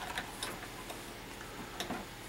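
A few faint, irregular light clicks and taps of tabletop handling as the wooden mask is set down and the wax-painting tool is handled, over a low steady hum.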